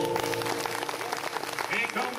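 Audience applause breaking out as the bluegrass band's final chord dies away within the first half second, with a few voices mixed in.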